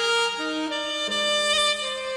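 Smooth jazz instrumental: a saxophone playing a slow melody of long held notes over sustained piano accompaniment.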